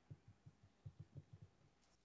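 Near silence with faint, irregular low thumps: handling noise on a handheld microphone being passed to an audience member.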